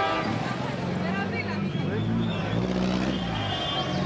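City street traffic, with cars driving past and a car horn that cuts off just after the start, under voices from the crowd.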